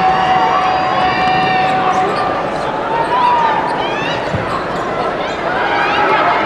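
Arena crowd chatter during basketball play, with sneakers squeaking on the hardwood court several times and a basketball bouncing.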